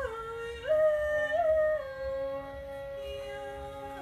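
Live fiddle and acoustic guitar with a woman singing. A sliding, bending melodic line settles about halfway through into one long held note over a steady lower drone.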